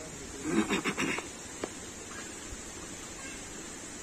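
A rhesus macaque gives a short, rough, pulsed call lasting under a second, followed by a single faint click.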